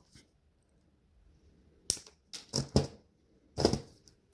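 Metal jewellery hand tools being handled while working wire: four short clicks and knocks in the second half.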